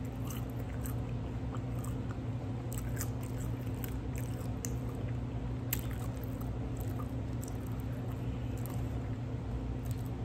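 A person chewing food close to the microphone, with scattered small wet mouth clicks, over a steady low hum.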